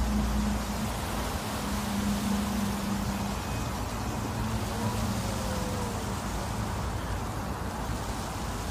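Steady outdoor noise with a low steady hum through the first few seconds, which then drops lower and fainter.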